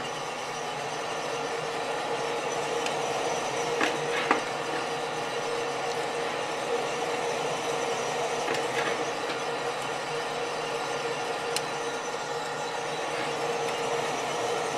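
Small gas-fired drum coffee roaster running at the end of a roast, its drum tumbling the beans over a steady motor and fan hum. A few scattered sharp pops come from beans still in first crack.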